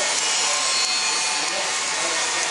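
Water pouring in many thin streams from the open end of a large flanged steel pipe, making a steady hiss.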